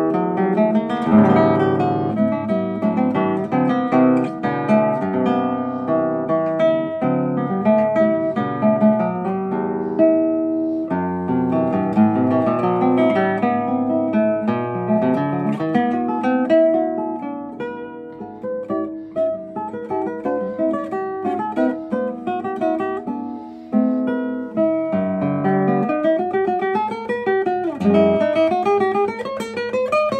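Solo classical guitar by luthier Roman Blagodatskikh, with nylon strings and a traditional (not double) top, played fingerstyle: a melody over bass notes, with a clear, bright tone. The playing eases into a quieter passage a little past the middle, then builds again.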